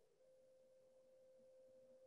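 Near silence, with only a faint steady tone.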